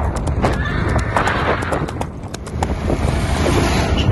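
A pony pulling a cart, its hooves clip-clopping in an irregular run of sharp knocks. A rush of noise builds near the end.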